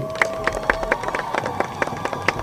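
About a dozen irregular sharp clicks over a faint steady tone that stops about a second in.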